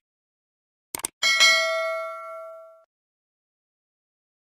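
A quick double click about a second in, then a bright bell ding that rings and fades away over about a second and a half: the click-and-bell sound effect of a YouTube subscribe-button animation.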